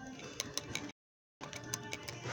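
Indistinct store background noise with a few sharp ticks, broken into short pieces by abrupt gaps of dead silence where the audio drops out.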